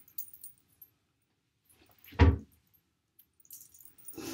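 Hands working long hair into a French braid, with faint crackling and rustling from the hair. One short, loud, low thump comes about halfway through.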